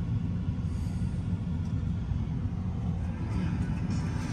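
Steady low rumble of road and engine noise heard inside a vehicle's cabin while driving.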